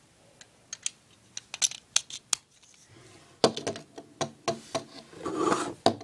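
Small plastic Lego pieces being handled and set down on a Lego baseplate: a string of light, sharp clicks, thicker a little past halfway, then a brief rubbing sound near the end.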